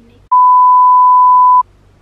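A censor bleep: one loud, steady pure-tone beep lasting about a second and a half, starting a moment in and then cutting off.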